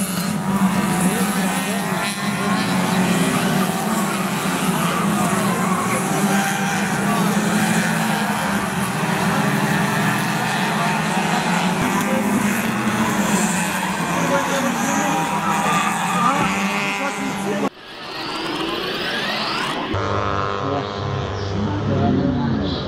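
Small Yugo race cars' engines revving and shifting as they race past on a street circuit, several at once, with crowd voices mixed in. The sound cuts abruptly about eighteen seconds in to another stretch of engines racing.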